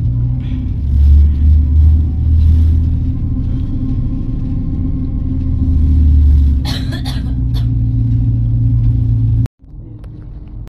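Steady low rumble of a moving passenger train heard from inside the carriage, with a faint steady hum above it. A short burst of clicking and rattling comes about seven seconds in. The sound cuts off suddenly near the end.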